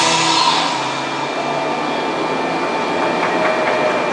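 The last notes of a background song fade out within the first second, leaving a steady, fairly loud background hum and hiss, such as outdoor machinery or air handling picked up by a camcorder microphone.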